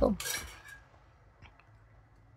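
A hand-held plum pitter's metal plunger clicks faintly a couple of times as plums are pitted, after a last spoken word fades out.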